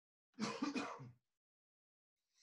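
A man clearing his throat: one short burst of three or four quick pulses, under a second long, starting about a third of a second in.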